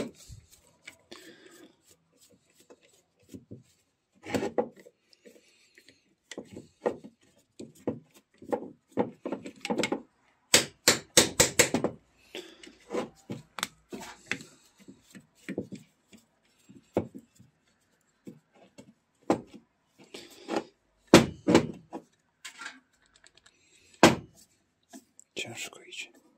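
Irregular metal knocks, clacks and scrapes as the stator of an Elmot 12 V alternator is worked loose and lifted out of its aluminium housing by hand, with a quick run of clacks near the middle.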